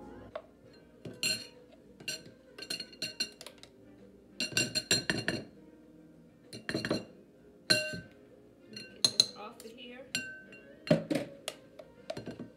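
A utensil clinking and scraping against a glass bowl and the plastic bowl of a food processor as food is scraped out: a run of sharp clinks with a short ring, coming in irregular clusters.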